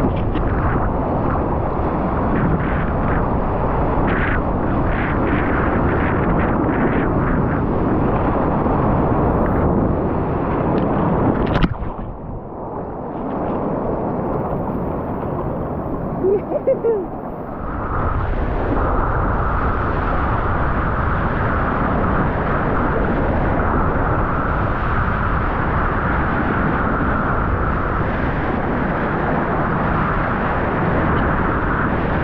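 Surf water and wind rushing against an action camera riding at the waterline, loud and buffeting with scattered splashes. About twelve seconds in it drops suddenly to a quieter, muffled stretch for five or six seconds, then the steady rush of water returns.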